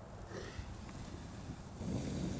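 Faint outdoor ambience: a low, even rumble of wind on the microphone, with no clear crackle from the fire.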